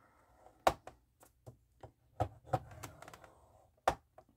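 A scoring tool drawn along the groove of a score board, pressing a fold line into a manila file folder: a soft scrape broken by a string of sharp clicks and taps. The sharpest clicks come about two-thirds of a second in and just before the end.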